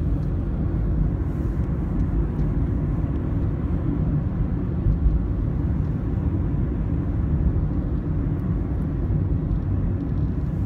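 Steady low rumble of a car driving at speed, heard inside the cabin: tyre and road noise with engine hum, even throughout.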